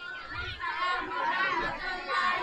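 Several voices answering the Islamic greeting together, fainter than the speaker at the microphone.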